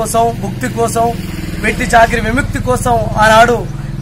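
A man speaking, over a steady low engine drone that starts just before and runs underneath his voice.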